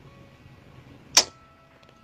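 A single short, sharp swish about a second in, over faint background music.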